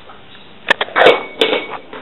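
Handling noise: a few sharp clicks and short rustling knocks as the camera is picked up and swung around, the loudest about a second in.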